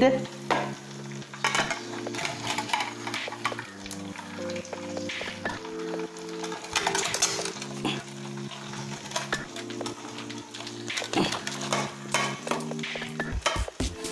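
Chicken pieces sizzling in hot frying oil, with a steel skimmer clinking and scraping against a steel bowl as the fried pieces are lifted out. Soft background music of held, slowly changing notes plays underneath.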